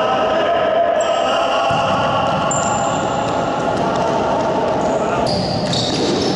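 Live futsal game sound in a reverberant sports hall: the ball bouncing and being kicked on the court, with players' distant shouts.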